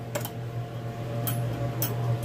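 Small electric fan running with a steady low hum, with a few light clicks as small cups and a spoon are handled on the bench.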